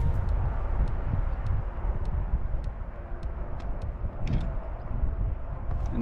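Wind rumbling on the microphone in open country, with scattered light clicks from handling or steps.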